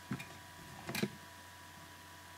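Two light handling clicks: a small one just after the start and a sharper one about a second in, over a faint steady high hum.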